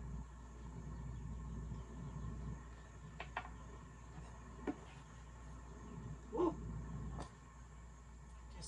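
Steady low hum of a countertop air fryer running, with a few soft clicks and taps of kitchen utensils on the counter and a steel bowl.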